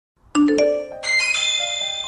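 A phone's incoming text-message chime: two quick ringing notes, rising in pitch, followed by a held bright chime chord.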